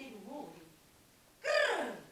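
An actress's voice: a low wavering vocal sound at first, then about one and a half seconds in a loud cry that falls steeply in pitch.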